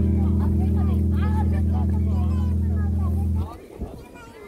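Crowd chatter, many voices talking at once, over a loud steady low hum that stops abruptly about three and a half seconds in.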